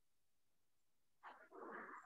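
Near silence, then a faint breath in from the speaker over about the last three-quarters of a second, just before his voice returns.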